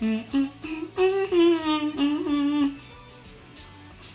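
A woman humming a tune in short held notes, with a brief laugh about two seconds in; it goes quieter for the last second or so.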